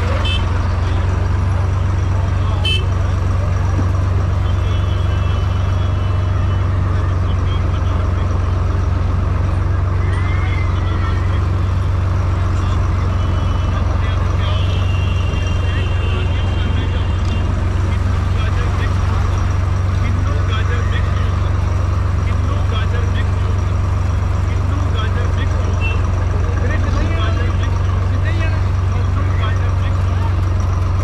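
A steady low vehicle engine drone under a constant hubbub of crowd voices, with a few short high toots and clicks scattered through it.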